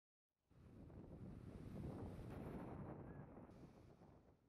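Faint, soft rushing noise like wind that swells over the first two seconds and fades away toward the end.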